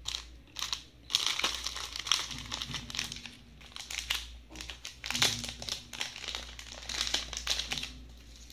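Clear plastic jewellery packets crinkling and rustling as they are handled, in irregular crackly bursts and clicks.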